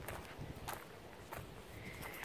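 A few faint footsteps on a gravel driveway, with low wind rumble on the microphone.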